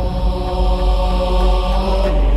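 Dramatic background score: a sustained chant-like vocal drone held over a deep bass.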